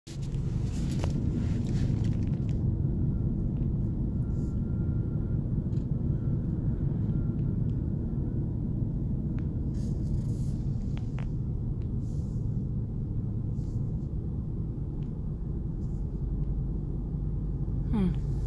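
Steady low rumble of a car's engine and tyres on the road, heard from inside the cabin while driving, with a few faint clicks.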